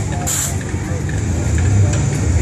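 A car's engine running low and steady as it drives slowly past, with a brief hiss about a quarter second in.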